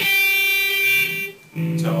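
Clean electric guitar: the last picked note of a lick rings out steadily for about a second and a half and then stops. A man starts talking near the end.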